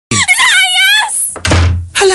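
A door creaking with a high, wavering squeal for about a second, then a heavy thunk about a second and a half in: a door sound effect opening a radio advert.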